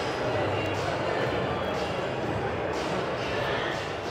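Steady background hubbub of a large indoor hall: distant voices and room noise, with no nearby voice.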